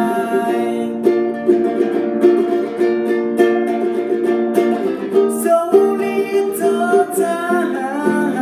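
Small nylon-string Yamaha guitar strummed in steady chords, with a man's voice singing over it.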